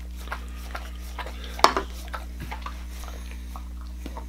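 Dog licking spilled beer off a wooden table, a string of small wet clicks, with one sharp knock about one and a half seconds in. A steady low hum runs underneath.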